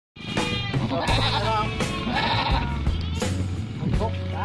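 Young goats bleating several times, each call wavering in pitch, over background music with a steady beat.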